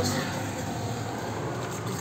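Steady low hum of a car idling and street traffic, heard from inside the car's cabin.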